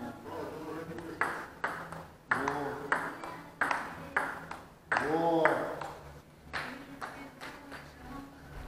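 Table tennis rally: the ball clicks sharply off the paddles and the table in an uneven series of quick hits, with a man's voice now and then.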